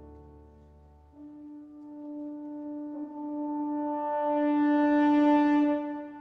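Live symphony orchestra holding a long sustained chord that swells steadily louder over several seconds, then breaks off near the end.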